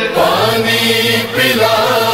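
Devotional chanting about Imam Hussain and giving water: voices singing drawn-out notes that glide between pitches, with no instrument standing out.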